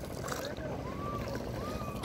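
Outdoor river ambience heard from a small wooden boat: a steady low rumble with faint distant voices calling out, two rising-and-falling calls in the second half.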